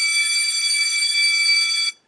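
School bell sound effect: a loud, steady, high-pitched ringing tone that cuts off suddenly just before the end.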